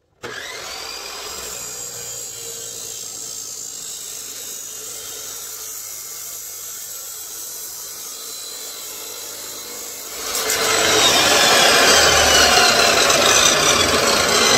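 Electric chop saw switched on, its motor whining up to speed and running free. About ten seconds in, the abrasive cut-off disc bites into square steel tube with a much louder grinding rasp, its pitch falling as the motor takes the load.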